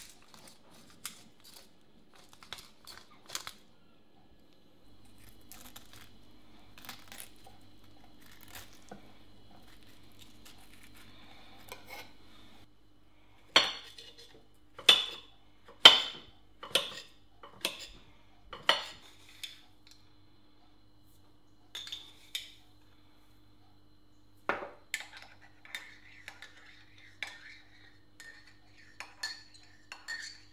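Crockery and cutlery being handled: scattered light clinks, then a run of sharp knocks about one a second through the middle. Near the end comes a metal spoon clinking and ringing against a ceramic mug of coffee.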